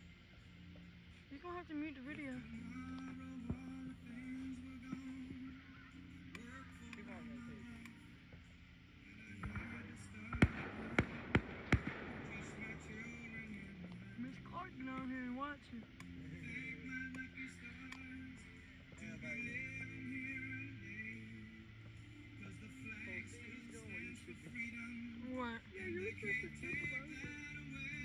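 Fireworks going off over background music and scattered voices. About ten seconds in comes a few seconds of hissing with four or five sharp bangs close together, the loudest sounds here.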